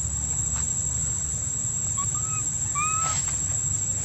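Outdoor ambience: insects drone steadily at a high pitch over a low rumble. A few short chirping calls come about two to three seconds in.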